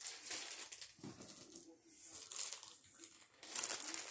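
Packaging crinkling and rustling on and off as items from the box are handled.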